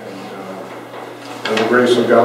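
A man speaking in a small room, his voice dropping low for about a second and a half before louder speech resumes.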